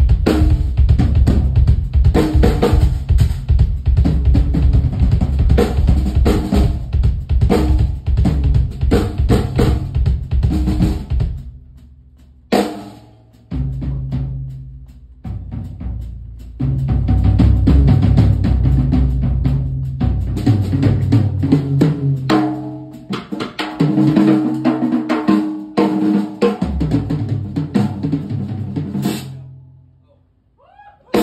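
Drum kit played in a live drum solo: fast, dense bass drum, snare and cymbal playing that breaks off about eleven seconds in to a few sparse, separate hits, then picks up again to dense playing and stops just before the end.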